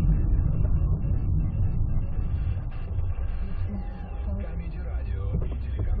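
Low, steady road and engine rumble heard inside a moving car's cabin, easing slightly about four seconds in.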